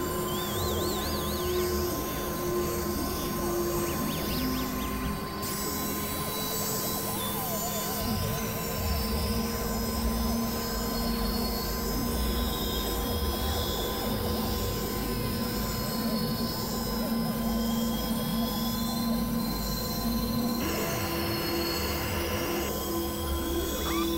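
Experimental electronic music: layered synthesizer drones and held tones with warbling, zigzagging pitch wiggles over a noisy low rumble. The texture shifts about five seconds in and again near the end.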